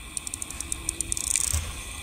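A quick run of light, ratchet-like clicks, about eight a second, that stops after a little over a second, followed by a brief soft rustle.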